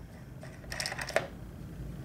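A few light plastic clicks and knocks as the air filter cover knob on an Echo CS-490 chainsaw is turned loose by hand and the cover shifts. The clicks come close together from about half a second in to just past a second.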